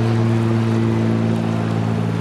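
A steady low engine-like hum, one unchanging pitch with overtones, over the rushing of a shallow creek running over gravel riffles.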